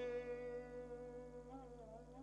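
Sitar note ringing on and fading away, followed near the end by soft wavering bent notes pulled on the string without a fresh pluck.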